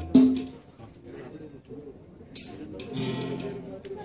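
Live instrumental introduction from a small accompanying band with a guitar-like plucked sound: a loud note at the start, a brief sharp high splash a little past halfway, then held chords.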